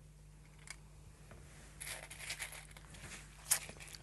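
Hands rummaging through a container of small scrap glass pieces: a faint click under a second in, then a stretch of light rattling and clinking in the second half, with one sharper clink near the end.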